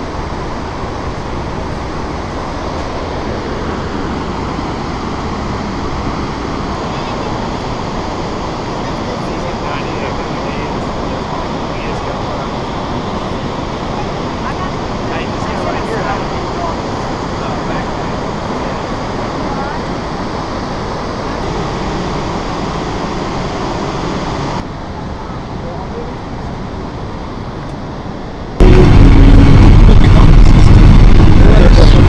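Steady rushing noise of the Lower Falls of the Yellowstone River pouring into the canyon. Near the end it cuts off suddenly to a much louder, low rumble of a moving vehicle.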